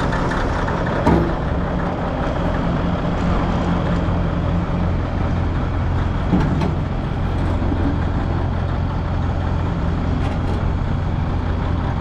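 Caterpillar 988 wheel loader's diesel engine running steadily, with one sharp knock about a second in.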